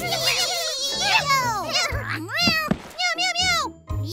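Cartoon kitten voices yowling and meowing in quick warbling, rising-and-falling cries as the kitties dig and tumble into the gopher holes, over background children's music.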